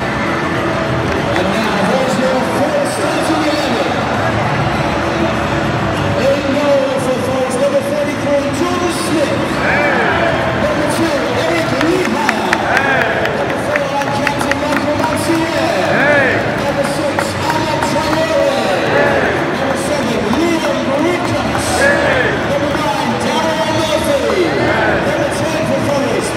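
Music playing over a football stadium's public address, mixed with the crowd's noise and voices.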